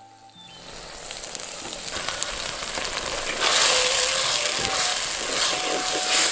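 Ground tomato and chilli masala frying in hot oil in a pan, sizzling. The sizzle fades in from quiet and grows louder, loudest from about three and a half seconds in.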